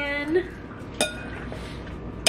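A utensil clinks against a bowl while chopped vegetables are tossed in marinade, with one sharp clink about a second in that rings briefly.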